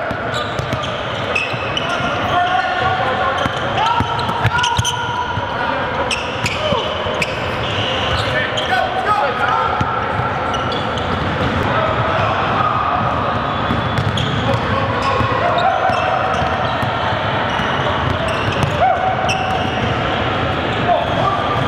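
A basketball dribbled and bouncing on a hardwood gym floor with sharp knocks, mixed with players' indistinct shouts and talk carrying through a large gym hall.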